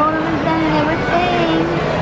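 A person's voice making two drawn-out, held tones over a steady, noisy background din.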